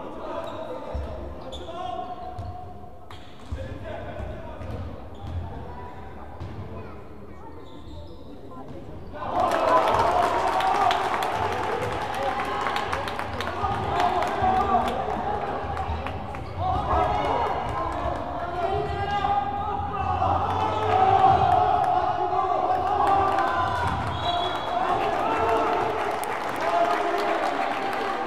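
Basketball bouncing on a wooden gym floor in a large hall, with players and spectators shouting. About nine seconds in the voices get much louder and stay loud.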